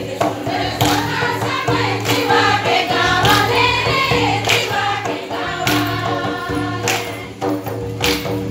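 A group singing a folk dance song in chorus, with sharp strokes on a two-headed barrel drum coming through every second or so.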